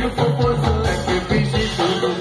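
A live band playing amplified Bahian-style carnival music, with a driving beat, bass and percussion.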